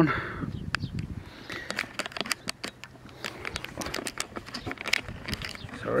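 Handling noise from the recording device being fumbled and moved: irregular crackling and rustling clicks.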